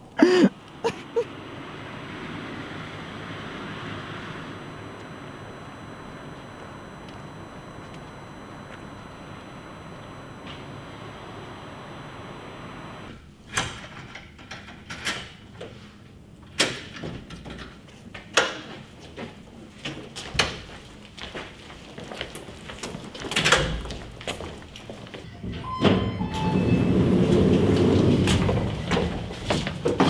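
Doors being worked: a sharp knock at the start, then a steady hum, then a string of irregular clicks and knocks from a door's handle and latch. Near the end comes a longer sliding rumble.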